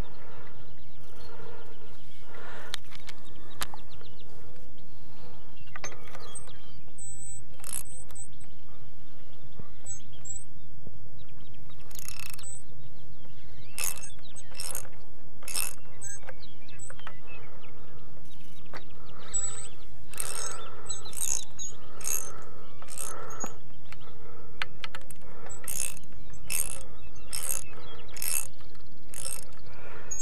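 Socket ratchet clicking in short runs as it turns the fitting on a small wind turbine generator's shaft, the runs coming thickest in the second half. A steady background rush of wind on the microphone runs underneath.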